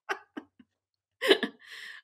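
Two people laughing in short, breathy bursts, with a louder laugh a little over a second in.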